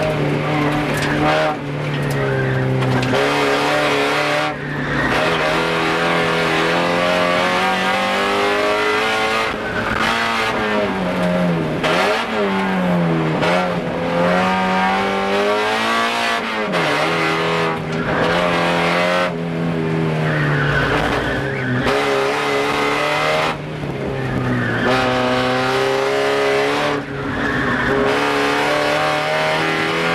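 Car engine heard from inside the cabin while driven hard through an autocross course: it revs up and falls back again and again under hard acceleration, lifts and braking, with the tyres squealing at times.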